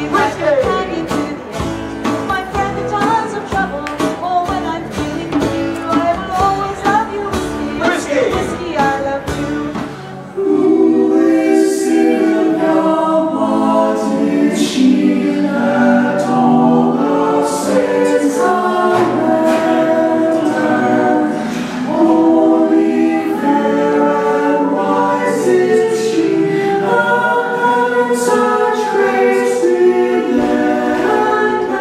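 Live folk-band music: strummed acoustic guitars, a drum beating a steady rhythm and singing voices. About ten seconds in it cuts to a small group of mixed male and female voices singing a cappella in close harmony.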